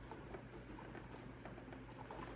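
Faint small clicks and rustles of a crocodile-textured guitar case being handled as it is opened, over a low steady hum.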